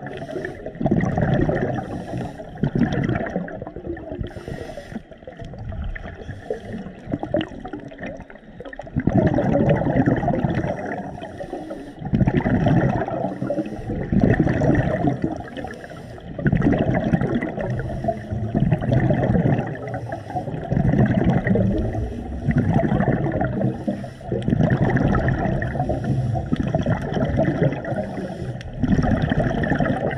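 A scuba diver's breathing heard underwater through the camera: rough, low bubbling and gurgling bursts, one every two to three seconds.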